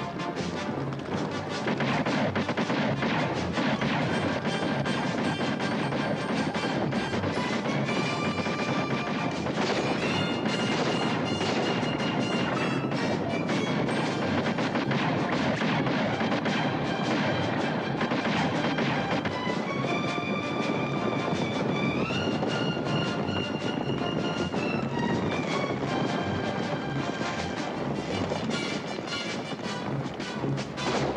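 Battle scene soundtrack: a dramatic orchestral score, with brass phrases that climb in steps, over a dense din of rifle fire and a galloping cavalry charge.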